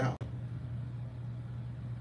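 The tail of a man's spoken word, then a pause holding only a steady low hum and faint room noise.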